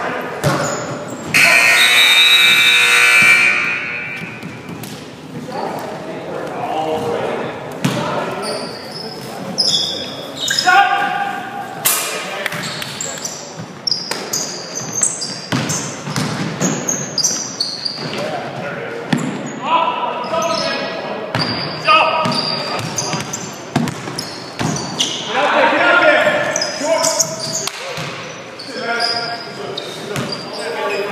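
Basketball game on a hardwood gym floor: the ball bouncing as it is dribbled and passed, sneakers squeaking, and players shouting, all echoing in a large gym.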